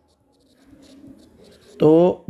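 Faint, irregular scratching of a stylus writing on a tablet, with a man's voice starting near the end.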